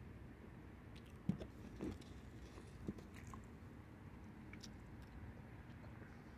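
Faint sounds of someone eating a soft cookie: a few short mouth clicks and smacks, the sharpest about a second in and others near two and three seconds.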